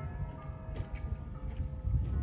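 A ring of five church bells tuned in E, swung full-circle in a complete peal (a distesa), heard from afar; several bell notes hang on and a fresh stroke sounds about half a second in, over a low rumble that grows toward the end.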